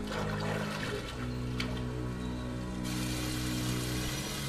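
Soft drama score of sustained low notes, with running water over rocks that grows louder about three seconds in.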